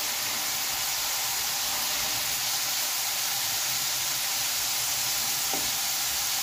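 Potato sticks for french fries deep-frying in hot oil, a steady sizzle.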